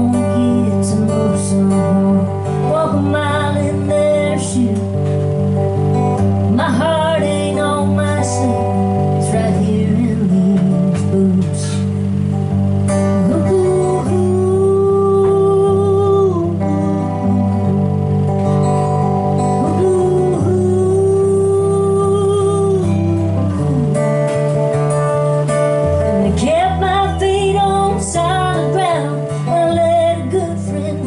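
A woman singing a slow country song live, accompanied by her own strummed acoustic guitar, with a couple of long held notes in the middle.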